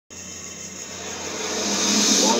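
Television broadcast sound picked up through the room: a steady, noisy hiss that starts abruptly and swells steadily louder over two seconds.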